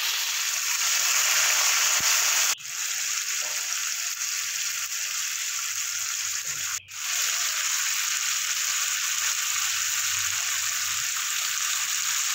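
Sliced tomatoes frying in hot oil in a wok: a steady sizzling hiss that drops out sharply twice, briefly.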